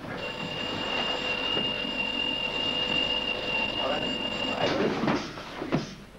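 A boxing gym's electronic round-timer buzzer sounds one steady, high-pitched buzz for about four and a half seconds, then cuts off suddenly. Near the end come a few dull knocks and scuffs of sparring.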